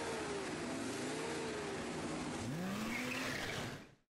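Car engine sound effect: an engine running over a noisy rush, then revving up in a rising sweep about two and a half seconds in, fading out at the end.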